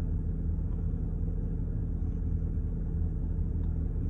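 Steady low rumble of an idling car, heard from inside the cabin.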